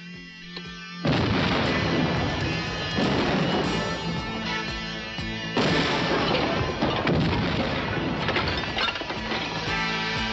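After a brief lull, a sudden loud explosion and the crash of a collapsing brick building, with further blasts about three and five and a half seconds in, over music.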